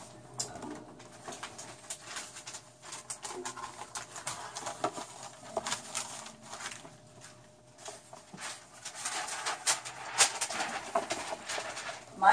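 Irregular light clicks and rustles of pet rats climbing and scrabbling on the wire bars of a cage.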